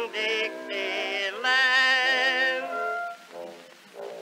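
A male tenor voice singing with orchestra on a 1911 acoustic cylinder recording, thin and without bass. Halfway through it holds a long note with vibrato, then drops away to a softer accompaniment near the end.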